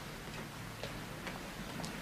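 Faint footsteps on stone paving slabs: a few light clicks about a second apart over a low steady hiss.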